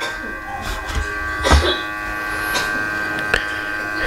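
Steady electrical hum with a whine of many fixed tones, typical of a hot-air rework blower left running while a heated laptop motherboard cools back to normal temperature. A few faint clicks sound about a second and a half in and near the end.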